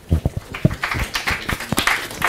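Small audience applauding: a few separate claps at first, thickening into steady applause about a second in.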